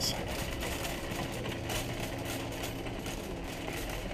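Shopping cart rolling over parking-lot asphalt, its wheels and basket rattling steadily.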